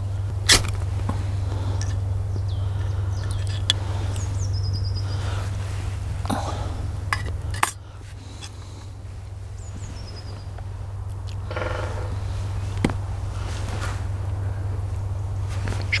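A few high, falling bird calls in woodland over a steady low hum that stops with a click about halfway through.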